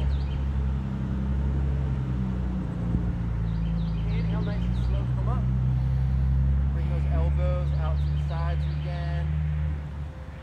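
A motor engine running steadily with a low hum, which cuts off suddenly near the end.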